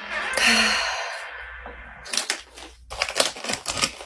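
A long sigh, then the crackling of a snack chip bag being handled, a quick run of sharp crinkles over the last two seconds.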